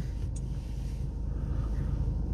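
Volkswagen Passat's 2.0 TDI common-rail diesel (CBB engine) idling steadily, heard from inside the cabin as a low, even hum.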